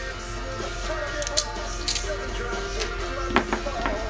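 Background guitar music plays steadily. Over it come several short, crisp sounds as a strip of blue painter's tape is cut from the roll.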